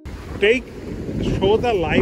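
Wind buffeting the microphone and ocean surf make a steady low rumble. Short bits of speech come over it about half a second in and again near the end.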